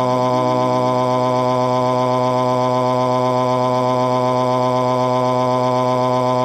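A synthetic text-to-speech voice holding one long, flat-pitched 'aaaa' scream without a break, loud and unchanging.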